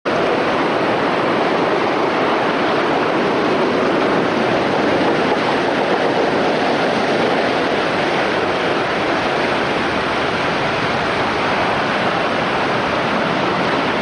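Heavy storm surf breaking against a stone seawall and slipway: a loud, unbroken wash of noise with no separate crashes standing out.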